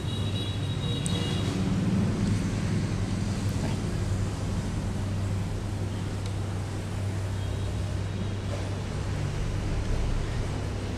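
Steady low mechanical hum with a constant background rumble, like a running air conditioner or fan, with a faint high whine in the first second or so.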